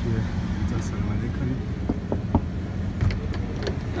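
Steady low mechanical hum of a running motor, with a few sharp metallic clicks about halfway through and again near the end as a trailer door's latch is worked and the door opened.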